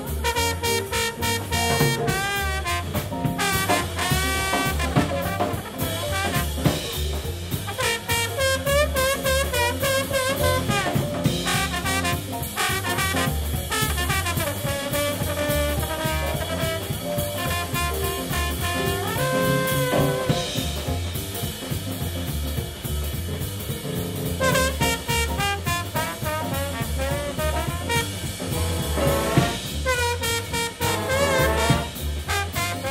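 Big band playing swing jazz live: saxophones and brass carrying moving melodic lines over bass and drum kit keeping a steady beat.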